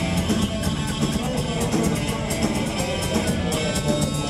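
Live hardcore punk band playing: electric guitar over drums and cymbals, loud and dense throughout.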